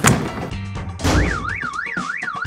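A sharp knock, then about a second in a car alarm starts, its siren tone sweeping rapidly up and down about three times a second: the alarm has been set off by something striking the car.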